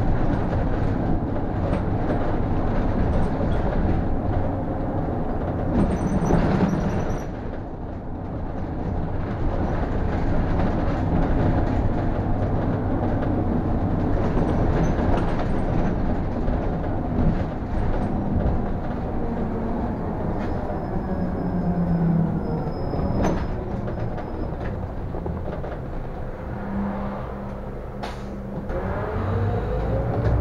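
City bus driving along a road, heard from the driver's cab: a steady rumble of engine and road noise with cabin rattles. It eases off a little twice, and near the end a whine rises as the bus picks up speed again.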